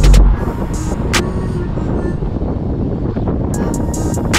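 Wind buffeting the microphone and tyre noise as a bicycle is ridden on its back wheel along an asphalt path, opening with a heavy low gust; music plays underneath.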